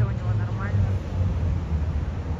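Steady low rumble of city street traffic, with a faint voice in the first second.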